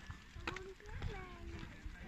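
A few short, wordless sounds from a high voice, with a couple of sharp knocks and a low rumble from the pushchair rolling along the road.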